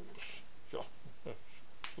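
A man saying a few slow, scattered words, with one short, sharp click near the end.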